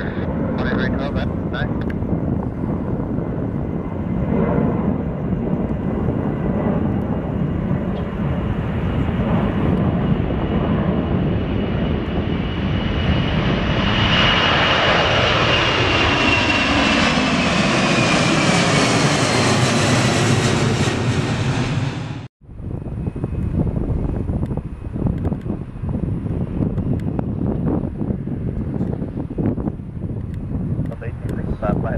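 Boeing 747's four jet engines at takeoff power: a steady roar through the takeoff roll that grows louder and brighter as the aircraft lifts off and passes close, with a fan whine falling in pitch. The roar cuts off abruptly a little over twenty seconds in, leaving a quieter outdoor background.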